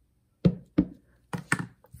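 Light, uneven taps of an ink pad dabbed onto a rubber stamp mounted on a clear acrylic block, about five taps with short gaps between.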